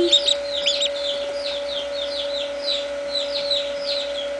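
Duckling peeping: rapid, repeated high peeps, each falling in pitch, several a second, over a steady hum.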